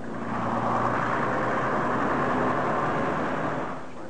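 Double-decker bus driving past on a city road: a steady rush of engine and road noise that swells just after the start and fades away near the end.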